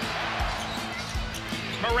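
A basketball being dribbled on a hardwood court, a low thud roughly every 0.7 seconds, over a steady arena crowd hum.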